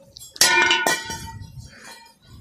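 A steel chaff-cutter gear wheel thrown hard onto a concrete floor. It strikes twice, about half a second apart, with a ringing metallic clang that fades out. The ring fits a gear that hits without breaking.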